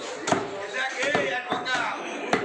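Three sharp chops of a meat cleaver on a wooden butcher's block, the loudest about a third of a second in, with voices talking around them.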